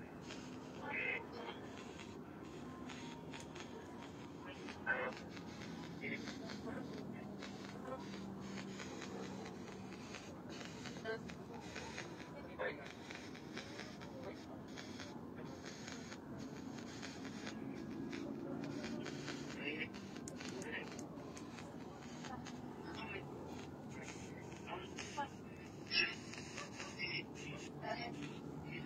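Faint, indistinct voices, too low to make out, with a few soft clicks and knocks from handling or footsteps.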